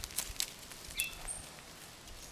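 A few sharp clicks and short, high-pitched chirps from rainforest wildlife, the chirps about a second in, over a faint steady background hiss.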